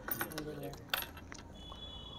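Low room noise in a pause between speech, with a few faint clicks, the clearest about a second in.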